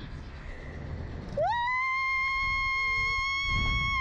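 A rider's long, high scream, gliding up about a second and a half in, held on one steady note and sliding down as it ends.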